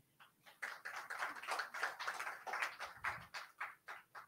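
A few people clapping lightly and unevenly, a quiet patter of hand claps that starts under a second in and dies away near the end.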